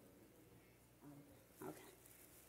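Near silence: room tone with two brief, faint off-microphone voice sounds in the second half.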